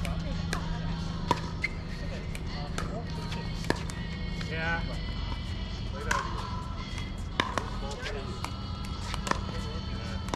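Pickleball paddles hitting a plastic ball: a string of sharp pops at irregular intervals, a couple of them much louder than the rest, over a steady low rumble.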